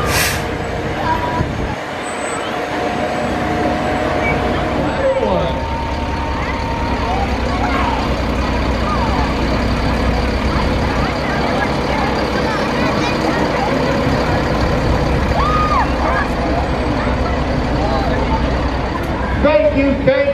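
Large diesel trucks rolling slowly past in a parade, their engines a steady low rumble. A short sharp hiss comes right at the start.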